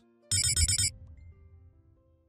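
Electronic beeping sound effect: a rapid run of high digital beeps lasting about half a second, then lower electronic tones that hang on and fade out.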